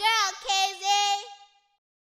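A child's voice singing one short line alone, without backing music, ending about one and a half seconds in; then silence.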